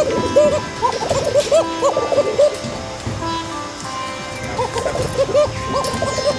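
Background music with held notes over many domestic fancy pigeons cooing: short rising-and-falling calls, several a second. The calls thin out in the middle and pick up again near the end.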